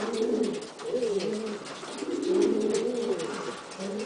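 Buchón Gaditano pouter pigeon cooing: low, throaty coo phrases that repeat with short breaks.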